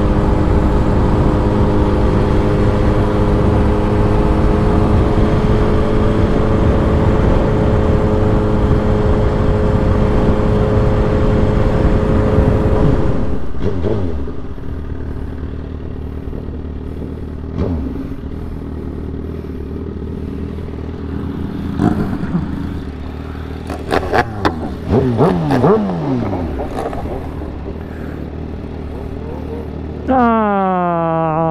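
Motorcycle ridden at a steady speed, its engine holding one steady pitch under rushing wind noise, until about halfway through the level drops as it slows. In the quieter second half, several engine sounds sweep down in pitch, a few of them in quick succession.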